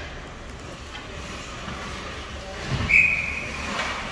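Indoor ice rink ambience, a steady low noisy hum of the arena with skaters moving. About three seconds in there is a low thump, then a single short high-pitched whistle-like tone that fades within about half a second.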